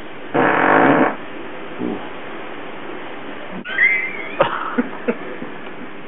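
A man's loud, buzzy fart lasting under a second, about half a second in, followed by a short weaker one. Later come a brief high squeak and a few sharp clicks.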